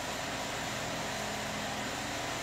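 Steady background hum and hiss of the room: a pause with no speech.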